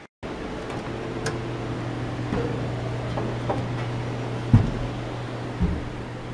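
A steady low hum, like a ventilation fan or air-conditioning unit, with a few faint knocks and one louder thump about four and a half seconds in.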